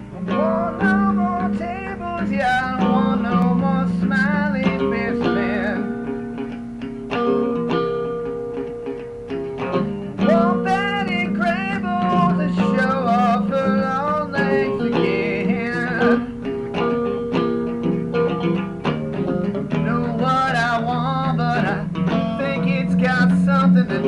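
Instrumental intro of a blues song: guitar chords with a wavering, bending lead melody above them.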